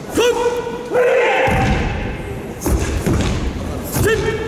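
Two drawn-out shouted calls in a man's voice, then from about a second and a half in a run of heavy low thuds and rumbling.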